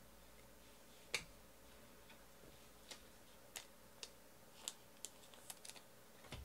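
Faint, sharp clicks and taps of trading cards being handled on a table, about nine in all: one louder click about a second in, then more that come closer together near the end.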